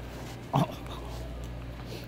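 A man's short pained 'oh' about half a second in, from an ice cream brain freeze, over a steady low hum.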